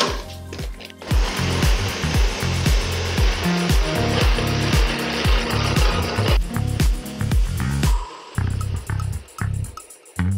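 Nutribullet blender motor running as it blends a smoothie, starting about a second in and cutting off at about six seconds, over background music with a steady beat.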